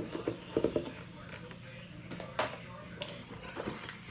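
A cardboard subscription box being opened by hand: quiet handling with two sharp clicks, one about two and a half seconds in and another about half a second later.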